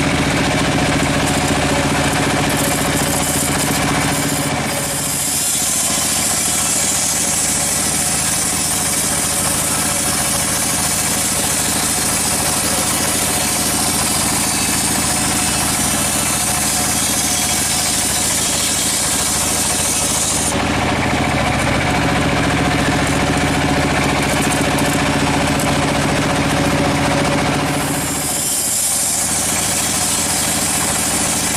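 Band sawmill running with a steady machine hum as its band blade cuts a teak log. A loud hiss of the blade in the wood comes in about five seconds in, stops about twenty seconds in, and returns briefly near the end.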